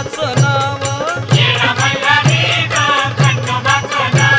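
Marathi devotional song to Khandoba: a singing voice over a steady drum beat of about two strokes a second, with jingling percussion.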